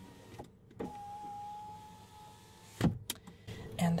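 A Jeep's electric power window motor running for about two seconds with a steady whine, ending in a sharp knock as the glass reaches its stop, followed by a smaller click.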